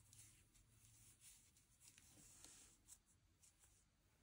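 Near silence, with faint, scattered rustles and light scratches of a crochet hook pulling cotton yarn through the stitches and of the crocheted fabric being handled.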